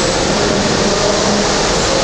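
Steady rushing background noise in a workshop, with a faint low hum running under it.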